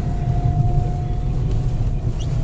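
Honda car heard from inside the cabin while driving: a steady low engine and road rumble with a thin steady whine above it.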